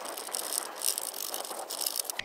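Socket ratchet clicking rapidly as a loosened clamp-bolt nut on a steel antenna mounting bracket is spun off, with light metallic rattling of the hardware.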